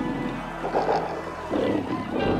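Snarling, roaring growls from vampires, in a few rough bursts about half a second apart, over dramatic soundtrack music.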